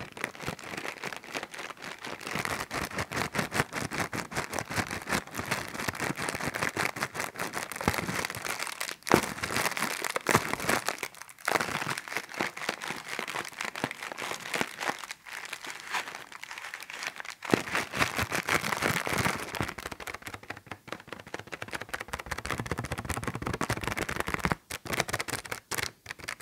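Clear plastic bag crinkled and rubbed between the fingers: continuous crackling with a few brief pauses.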